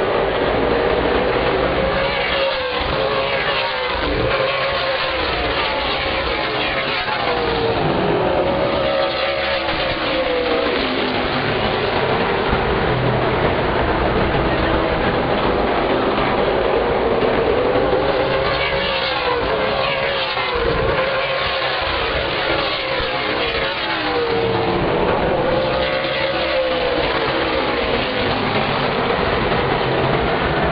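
A field of stock cars' V8 engines running around a short oval, a loud continuous din whose pitch swells and falls away each time the pack passes, several times over.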